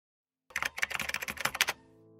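Computer keyboard typing sound: a quick run of about sixteen keystrokes, a dozen or so a second. It starts about half a second in and stops a little before the end.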